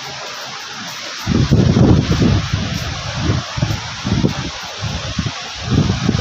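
Wind buffeting the microphone in irregular gusts, starting about a second in, over the steady rushing hiss of the Swat River's rapids.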